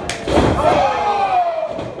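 A single thud on the wrestling ring right at the start, then a long drawn-out shout that falls in pitch.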